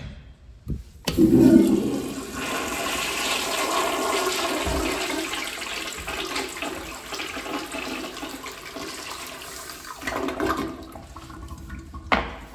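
Commercial flushometer toilet flushing: a sudden loud rush of water starts about a second in, then a steady swirling rush that gradually eases off near the end.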